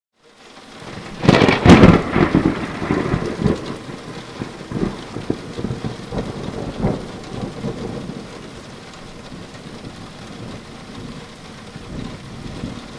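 Thunderstorm: a loud crack of thunder about a second and a half in, rumbling away over the next several seconds, over steady rain.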